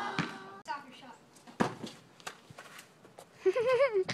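Mostly quiet with a few faint, sharp knocks; a child's voice fades out of a shout at the start and speaks briefly near the end.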